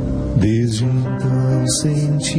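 Slow, soft religious song: a man singing into a microphone over gentle instrumental accompaniment, the voice coming in about half a second in.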